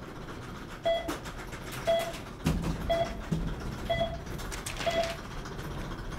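Film countdown leader playing on a cinema screen: a short electronic beep once a second, five times, counting down.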